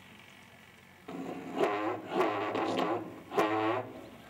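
A loud, high-pitched amplified voice in drawn-out calls that rise and fall, starting about a second in, over a steady low hum, with four louder peaks.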